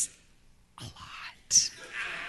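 Soft whispered speech: short breathy, unvoiced words starting about a second in, with a sharp hiss near the middle.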